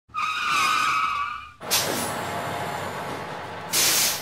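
Title-sequence vehicle sound effects: a wavering tyre screech lasting about a second and a half that cuts off abruptly, then a sudden rush of noise that settles into a steady hiss, and a loud burst of hiss near the end.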